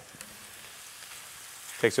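Thin Yukon Gold potato slices deep-frying in hot oil: a soft, steady sizzle.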